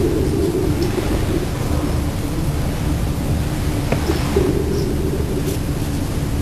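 Steady low rumble with a faint hum underneath: continuous background noise of the room or recording. A single faint click about four seconds in.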